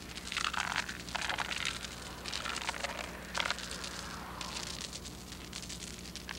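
Steel chain dragged across a concrete bridge deck, a rough irregular scraping rattle, densest in the first three and a half seconds and thinning after. This is chain-drag sounding, done to pick out hollow-sounding areas of the deck that need repair.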